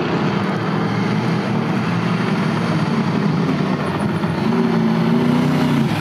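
Off-road race truck's engine running hard as the truck accelerates past, its note climbing and growing a little louder near the end.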